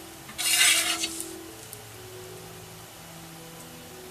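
A brief rustling scrape, about half a second long, just under a second in: hands handling the crochet work and a plastic stitch marker against the work surface.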